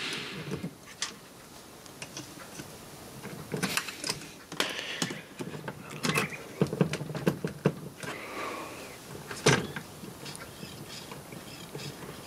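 Irregular clicks, knocks and rustles of hand handling: alligator-clip leads being unclipped and clipped back onto the terminals of a small printer ink-pump motor, and the plastic printer mechanism being moved, with the sharpest knock about three-quarters of the way through.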